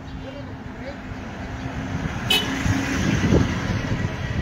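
A small hatchback car approaching along the road, its engine and tyre noise growing louder from about halfway through. A brief sharp high-pitched chirp sounds a little past two seconds in.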